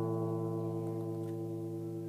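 An acoustic guitar chord ringing out and slowly dying away.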